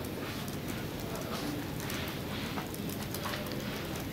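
Low room noise with scattered light clicks and taps during a pause in speech.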